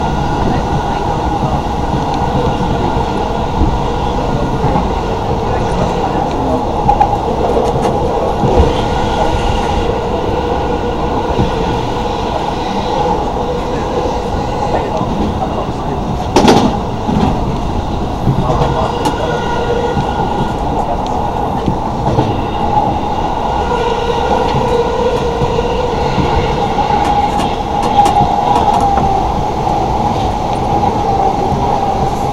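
Cabin noise of a moving electric commuter train, heard from inside the car: a steady running rumble with a humming tone throughout. A few knocks from the wheels and car body come through it, the sharpest and loudest about halfway through.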